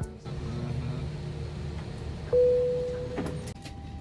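Steady low hum of an Airbus A321's passenger cabin. About two seconds in, a single electronic cabin chime sounds on one pitch and fades over about a second.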